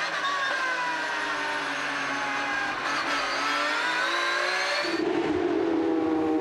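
Porsche 911 GT3 Cup race car's flat-six engine heard from inside the cockpit: the revs sink, then climb hard with a gearshift break about three seconds in. About a second before the end the sound cuts to a different, steadier engine note from another car on track.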